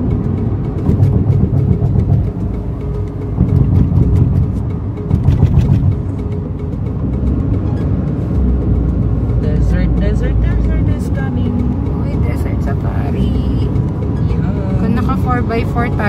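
Road and engine noise inside a moving Hyundai car's cabin: a steady low rumble that swells louder a few times in the first six seconds. In the second half, voices or music can be heard over it.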